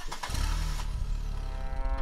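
Film soundtrack: a loud, low mechanical rumble with hiss, which starts abruptly. Near the end a held brass note comes in over it.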